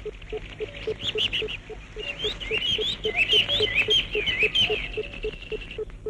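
Birds chirping in quick, short calls through most of the stretch, over a steady low note repeating about three times a second.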